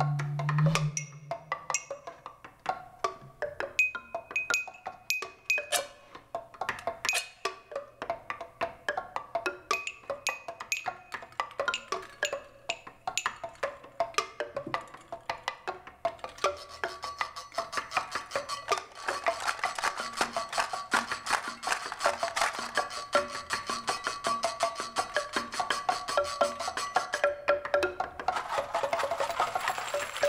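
Live percussion on homemade found-object instruments: a stream of sharp clicks and short pitched knocks. About halfway through it thickens into dense, fast shaking and rattling over a steady high tone.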